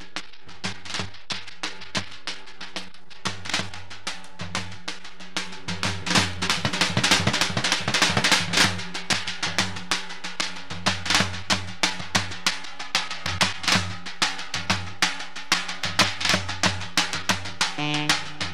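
Live band drums playing a fast, dense rhythm over a low bass line, getting louder about six seconds in.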